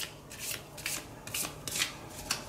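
Deck of tarot cards being shuffled by hand: a run of short swishes of cards sliding against each other, about two or three a second.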